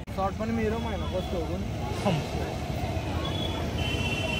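People talking in the background over a steady low rumble, with the voices fading after about two seconds and a thin high tone sounding near the end.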